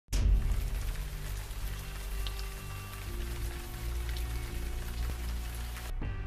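A steady rain-like hiss over low, held music notes that change about halfway through. The hiss cuts off abruptly just before the end.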